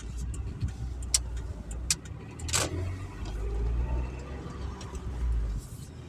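A car's engine and road noise heard from inside the cabin while driving: a steady low rumble that swells for a few seconds mid-way, with a few light clicks.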